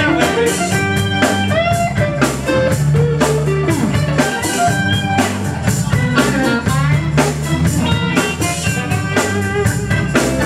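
Live rock band playing an instrumental break: an electric guitar lead with bent, sliding notes over bass, rhythm guitars and a steady drum-kit beat.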